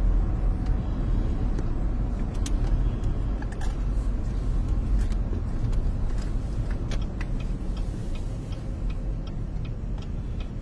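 Steady road and engine noise inside a moving vehicle's cabin, a low rumble of tyres and motor, with a few faint scattered clicks.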